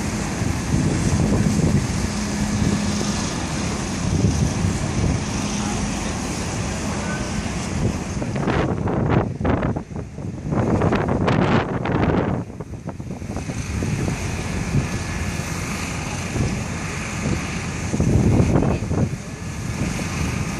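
Twin Caterpillar 16-cylinder turbocharged diesels of a Damen ASD 2411 harbour tug running as the tug manoeuvres close by, with a steady low hum, under wind noise on the microphone.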